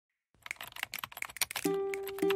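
Computer keyboard typing sound effect: rapid key clicks start after a brief silence. Music starts near the end with a sustained pitched note.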